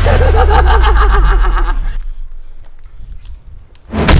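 Dramatic sound effect: a loud low rumble with a wavering, warbling tone over it, fading out about halfway through and leaving a few faint clicks.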